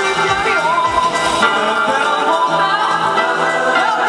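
Male voices singing in close harmony over a song backing, with a low drum beat that drops out about a second and a half in, leaving the voices.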